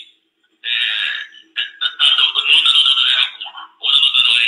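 A person's voice talking, thin and tinny like a phone or video-call recording, starting after a gap of about half a second.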